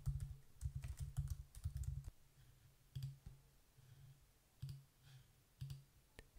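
Faint typing on a computer keyboard: quick runs of keystrokes for about the first two seconds, then a few single clicks spaced out.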